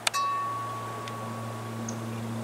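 A wind chime strikes once near the start, then rings on with one clear tone that slowly dies away. Under it runs a steady low drone from the four turboprop engines of a Lockheed Martin AC-130J gunship circling overhead.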